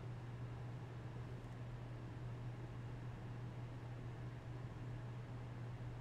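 Faint room tone: a steady low hum with an even hiss, unchanging throughout.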